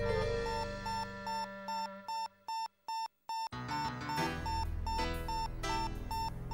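Electronic alarm beeping: a single high beep repeating about three times a second over cartoon background music, the sign of burglar alarms set off by a robbery. The music drops out for a moment in the middle, leaving only the beeps.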